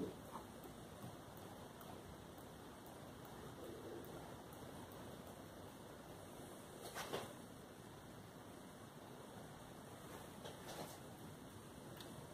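Quiet room tone broken by a few faint, short ticks of a paintbrush being tapped to splatter paint, the clearest about seven seconds in and a couple more near the end.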